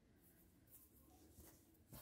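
Near silence, with faint rustling of a thin cloth scarf being handled and turned, and a brief soft click near the end.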